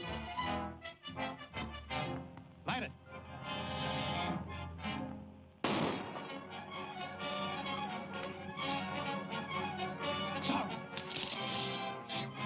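Orchestral film score: short repeated chords, then a sustained passage that fades away and is cut by a sudden loud burst about halfway through, after which the music carries on.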